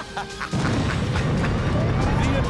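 A man's brief laugh, then about half a second in a sudden loud explosion-and-fire sound effect that keeps on as a steady low rumble. Near the end a siren begins to wail upward over it.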